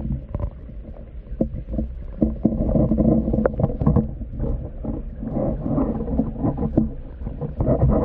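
Stream water heard through a camera held underwater: a muffled low rush with gurgling and scattered clicks and knocks, swelling louder about two seconds in, again in the middle and near the end.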